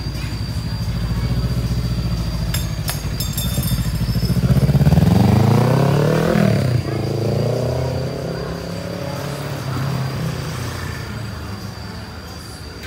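Kawasaki Z300 parallel-twin engine running through an aftermarket Akrapovic full-carbon exhaust. It idles steadily, then revs up as the bike pulls away: the pitch climbs for a couple of seconds, drops suddenly at a gear change and climbs again, then fades as the bike rides off.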